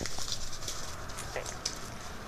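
Faint rustling and crinkling of a small folded paper slip being unfolded by hand, with a few light clicks.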